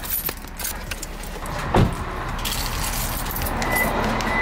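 Someone getting out of a parked car: rattling, jingling handling noises, then a single car-door thud a little under two seconds in, followed by steady outdoor hiss.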